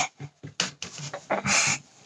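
A child's short, strained breaths and puffs while heaving up the heavy lid of a storage bed, with a longer breathy exhale about a second and a half in and a few light knocks.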